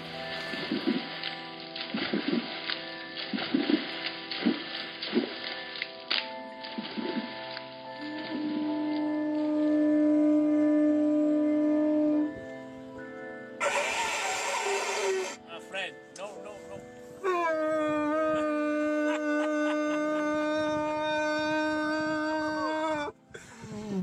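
A conch shell blown as a horn: two long, steady low notes, the second starting with a brief upward bend, over background music.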